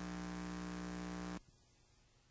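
Steady electrical hum with hiss from an old film soundtrack, cutting off suddenly about one and a half seconds in and leaving only a faint noise floor.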